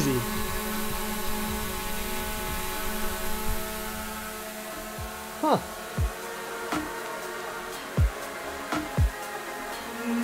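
DJI Mavic Air 2 quadcopter hovering close by, its propellers giving a steady whine of several tones, a little noisy. From about halfway through, electronic music with deep bass hits that fall in pitch comes in over it.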